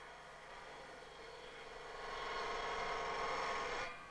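Table saw's circular blade ripping a board of dry pine: a steady pitched running sound that grows louder about two seconds in as the blade cuts through the wood, then stops suddenly near the end.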